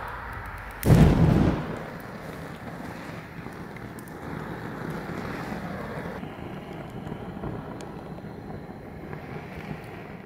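Propane burner pan of a log fire table lighting with a loud whump about a second in, then the gas flames burning with a steady rush.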